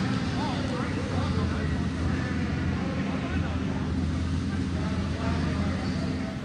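Outlaw kart engine running steadily at low speed, with crowd voices in the arena mixed in.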